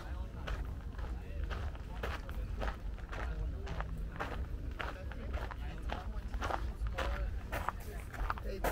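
Footsteps of someone walking at a steady pace, about two steps a second, with other people's voices talking in the background.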